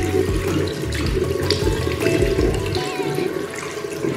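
Tap water running from a faucet and splashing into a ceramic washbasin.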